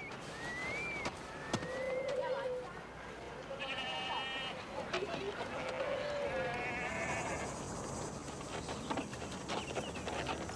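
Sheep and goats bleating in a livestock camp, several separate wavering calls one after another, with scattered light knocks and clatter.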